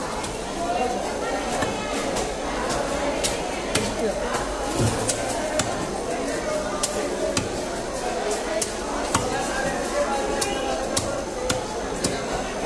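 Knife chopping through fish: sharp, irregularly spaced knocks, roughly one every half second to a second, over a steady background of indistinct voices.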